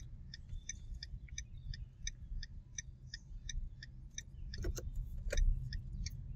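A car's turn-signal indicator ticking steadily, about three clicks a second, over a low rumble of road noise inside the moving car. Two brief louder sounds come near the end.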